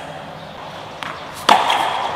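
A tennis ball struck by a racket: a faint tap about a second in, then one sharp, loud hit that rings briefly.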